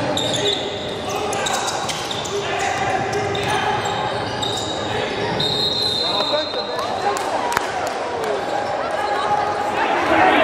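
Live basketball game sound in an echoing gym: a ball dribbling on the hardwood court and players and spectators calling out, with one sharp knock about three-quarters of the way through.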